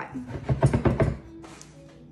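A quick run of about half a dozen knocks and thumps from a glass measuring bowl of flour jostled on a wooden cutting board, settling the flour so it can be read level. The knocks come in the first second and then die away.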